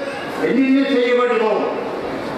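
A man's speech in Tamil through a microphone, with short pauses at the start and the end.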